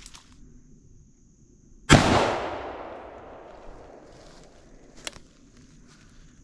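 A single gunshot about two seconds in, its report fading off through the woods over a second or more. A short, sharp click follows about three seconds later.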